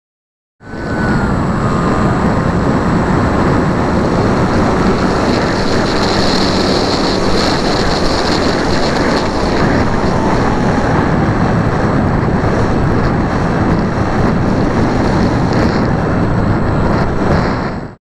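Onboard recording from a small fixed-wing model plane in flight: heavy wind rush on the camera's microphone over the motor and propeller, whose faint whine drops in pitch in the first couple of seconds. It starts suddenly about half a second in and cuts off at the end.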